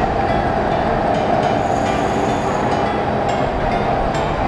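Steady, loud, rumbling background din of a market hall, with a constant hum running under it.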